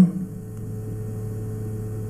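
Steady low electrical hum with a faint higher tone and light hiss: an open call line with no answer from the caller.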